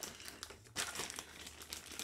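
Clear plastic bag wrapped around a pad controller crinkling as it is handled and worked loose from its box, with a short lull a little over half a second in.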